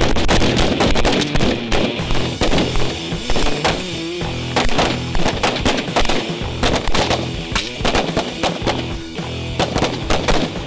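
Gunfire from several AR-15-style carbines and then pistols, many shots overlapping irregularly at several a second, as the line runs a carbine-to-pistol transition drill. Background music plays under the shots.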